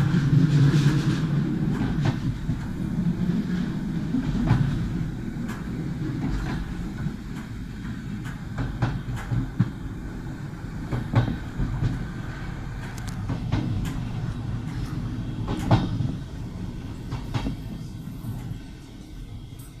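Passenger train running along the track, heard from inside the carriage: a steady low rumble with irregular sharp clicks of the wheels on the rails. It is loudest in the first couple of seconds and slowly eases off.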